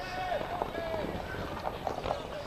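Shouted calls from rugby players and onlookers during play, over steady outdoor background noise, with a few short knocks.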